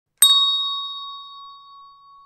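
A single bright bell-like ding, struck once and ringing out in a slowly fading tone.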